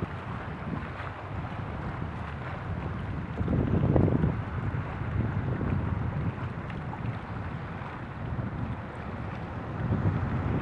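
Wind buffeting the microphone over open water: a rough, uneven low rumble, with a stronger gust about four seconds in.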